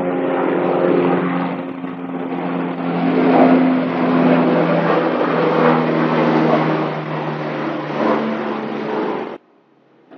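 A loud, steady engine drone with a low hum, swelling slightly in the middle and cutting off abruptly near the end.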